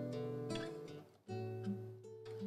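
Nylon-string classical guitar strumming chords and letting them ring, with a brief gap and a fresh chord about a second and a quarter in.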